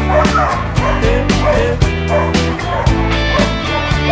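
A dog barking and yipping several times in short calls over loud background music with a steady beat.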